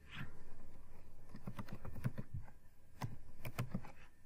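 Typing on a computer keyboard: a run of irregular key clicks, with a couple of sharper clicks near the end.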